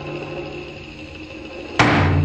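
A deep drum beat with a lingering low boom fades out, and a second sharp, heavy strike lands near the end, its boom ringing on.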